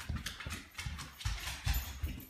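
Footsteps on a hardwood floor: a quick, uneven run of thumps and clicks, several a second.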